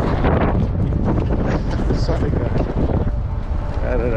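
Wind buffeting the microphone during a bicycle ride, a steady low rumble, with faint snatches of voices in the middle.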